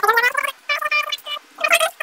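A high-pitched voice in several short bursts, each a fraction of a second long, with brief gaps between them.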